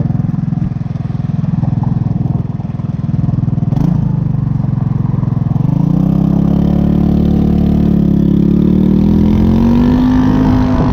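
The single-cylinder four-stroke GY6 150cc engine of a 2007 JonWay scooter, its exhaust made louder with washers, idling steadily. About halfway through it revs up, and the pitch rises smoothly as the scooter pulls away. There is a brief click shortly before the revving starts.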